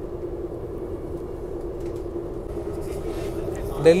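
Steady running noise heard inside a RapidX (Namo Bharat) electric commuter train coach travelling at about 95 km/h: an even rumble with a constant hum. A man's voice starts near the end.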